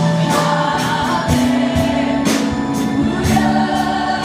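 Live contemporary worship music: a band with keyboard and drums plays under a worship team and congregation singing together, with a steady beat of about two drum hits a second.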